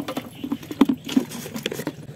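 Irregular light clicks, taps and pattering as a small caught fish and a plastic bucket lid are handled, with a small motorcycle engine idling underneath.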